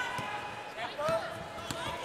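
Basketball dribbled on a hardwood court, a run of bounces over the arena crowd's steady noise.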